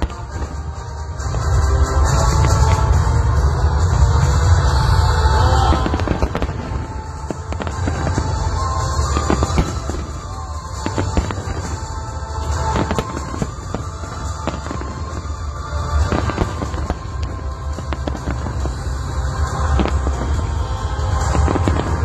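Fireworks display: rapid, overlapping aerial shell bursts and crackle with deep booms, heaviest from about two to six seconds in.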